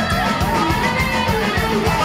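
Live rock band playing at full loudness: a steady drum beat under bass and electric guitar, with pitched lines that bend up and down over the top.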